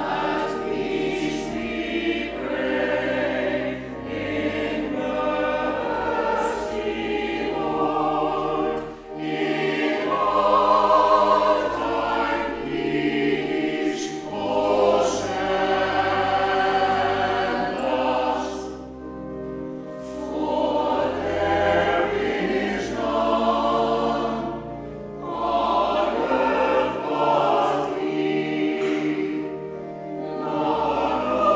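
Mixed choir singing a sacred choral piece in phrases, with sustained low organ notes underneath.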